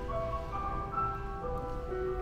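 Grand piano playing a slow melody over held chords, live in a concert hall.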